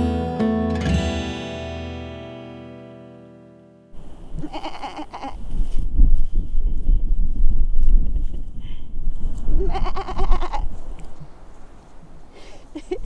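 An acoustic guitar song ends on a ringing chord that fades out over about four seconds. Then wind rumbles loudly on the microphone, and a sheep bleats twice, each bleat about a second long.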